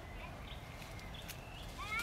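Faint outdoor background with a few light clicks, and a short rising animal call near the end.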